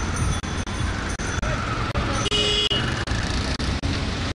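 City road traffic noise, a steady rumble of passing vehicles, with a short higher-pitched tone a little past the middle.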